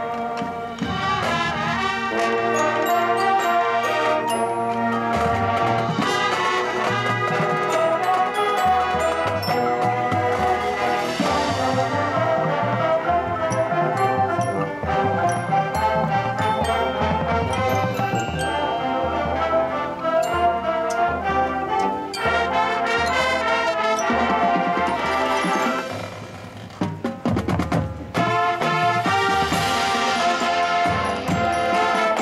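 Live high-school marching band playing: brass over drums, with a front ensemble of mallet percussion. The music drops briefly to a quieter passage near the end, then the full band comes back in.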